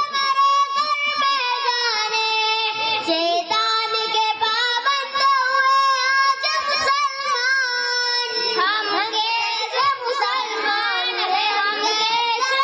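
A child singing a naat in Urdu, unaccompanied, in long held notes that bend and waver.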